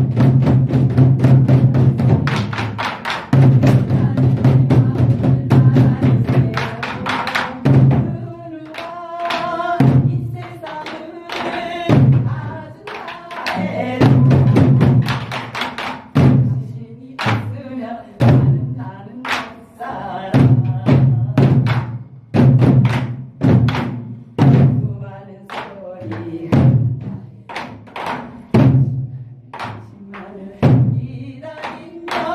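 Large Korean barrel drums (buk) on wooden stands struck with wooden sticks in a steady, fast song rhythm. Deep booming strokes on the drumhead (둥) alternate with sharp clacks (따).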